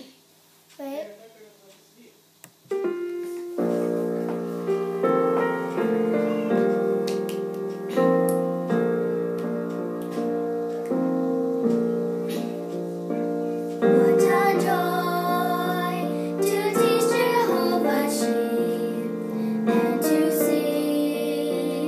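Piano accompaniment of a hymn played back over a speaker, starting about three seconds in after a short quiet. About halfway through, it grows louder as two young girls begin singing along.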